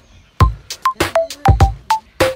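Background music: an electronic beat of short plucked notes and sharp drum hits in a quick, even rhythm, starting just under half a second in.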